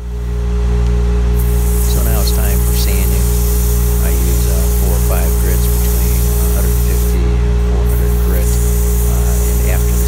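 Wood lathe motor running with a steady low hum while sandpaper held against the spinning wooden bowl gives a loud hiss. The hiss starts a second or so in and drops out briefly a little after seven seconds.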